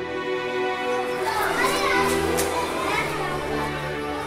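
Background film music with sustained notes, joined about a second in by a crowd of children's voices chattering for a couple of seconds.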